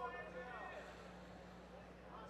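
Faint voices in the background, clearest in the first second, over a steady low hum.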